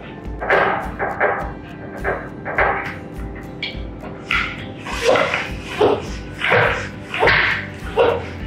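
Floor pump being worked by hand, a short rush of air with each stroke, about three strokes every two seconds, inflating a tubeless road tyre to seat its beads on the rim. Background music with a steady beat underneath.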